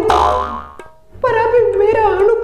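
A cartoon-style comedy sound effect: a sudden ringing twang that fades out within about a second. After a short pause, a high-pitched voice with music comes in.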